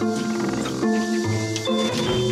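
Background music: a gentle melody over steady bass notes that change about every half second.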